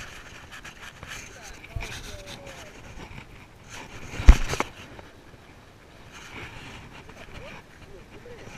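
Camera being handled and jostled, with one sharp knock about four seconds in, over a steady background of surf and wind.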